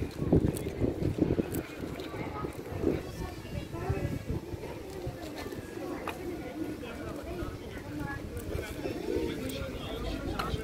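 Open-air street sound: wind gusting on the microphone during the first couple of seconds, then indistinct voices of people talking that carry on to the end.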